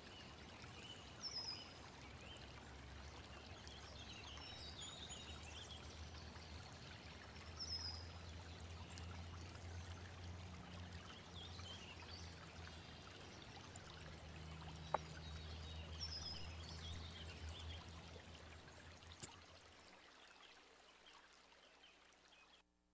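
Faint water sounds with scattered bird chirps, fading out near the end.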